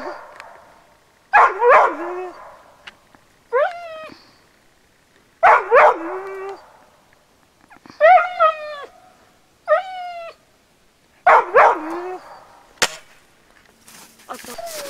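A dog barking over and over at a squirrel up a spruce tree, short rising barks every second or two. A single sharp snap near the end.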